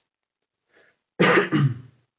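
A person clears their throat once, about a second in: a short, loud, two-part rasp that ends in a low voiced tail.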